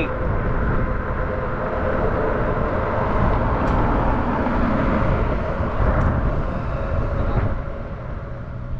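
Riding noise of an electric bike at about 28 mph: wind rushing on the microphone and the tyres humming over a grooved concrete bridge deck, with a faint steady tone underneath. It eases a little near the end.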